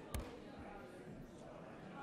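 Murmur of many people talking at once in a large hall, with one sharp thump just after the start.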